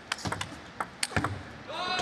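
Table tennis rally: the ball clicks off the rackets and the table in a quick series of sharp strikes, the loudest about a second in.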